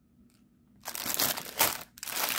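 Clear plastic packaging bag of a cross-stitch kit crinkling and crackling as it is handled and turned over, starting about a second in after a near-silent moment, loudest shortly before the end.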